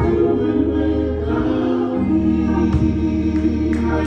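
Gospel praise team singing together into microphones, holding long notes over a steady accompaniment with a low bass line.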